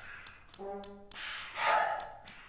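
Contemporary chamber ensemble music: a short held brass note about half a second in, then a brief noisy burst near the end, over faint regular ticking.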